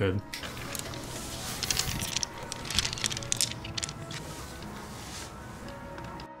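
Loose stones clicking and clattering against each other and the glass of a small aquarium tank as it is handled. There is a run of sharp, irregular clicks over a background hiss.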